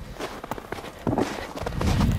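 Footsteps on snow: a handful of short, irregular steps as someone walks across a snow-covered yard.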